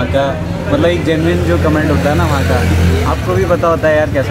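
Men's voices talking over the low, steady hum of a motor vehicle engine running close by; the engine hum stops about three seconds in.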